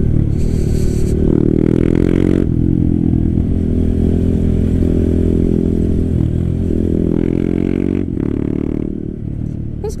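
Motorcycle engine running under way, heard from the bike itself, its note shifting about two and a half seconds in and again around eight seconds in, then starting to fade near the end.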